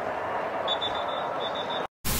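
Steady background noise of a football stadium sideline, with a faint, rapid high-pitched beeping from about two-thirds of a second in. The sound cuts off abruptly near the end.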